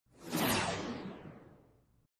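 Whoosh sound effect for an animated intro logo: a rush of noise that swells in over the first half second, then fades out over about a second and a half, its high end dying away first.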